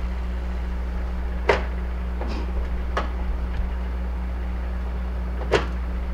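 A microwave oven running with a steady electrical hum while plastic Nerf blasters overheat and burn inside it. A few sharp pops or cracks break through the hum, the loudest about a second and a half in and near the end.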